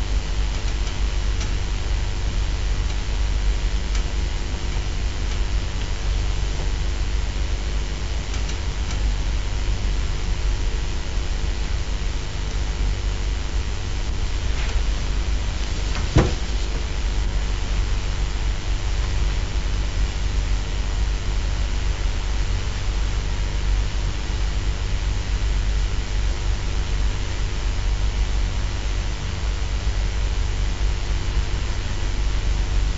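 Steady hiss with a low hum and faint steady tones, the background noise of the recording, with one short click about halfway through.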